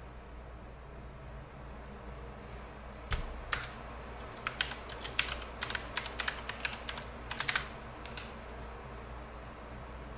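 Typing on a computer keyboard: irregular key clicks starting about three seconds in and stopping about five seconds later, over a steady low room hum.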